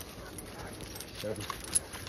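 Footsteps rustling through leaf litter on a woodland trail, with a few light clicks; a man briefly says "So".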